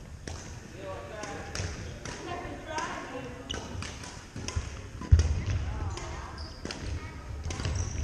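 Badminton rally on a wooden gym floor: sharp cracks of rackets striking the shuttlecock, sneaker squeaks and footfalls, with one heavy thud about five seconds in. Voices chatter in the echoing hall.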